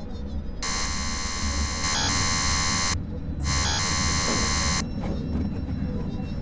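An electric shaver buzzing in two bursts, the first about two seconds long and the second about a second and a half, over a low steady drone.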